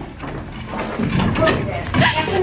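A woman laughing and talking indistinctly close to the microphone, with a sharp rustle of handling about one and a half seconds in.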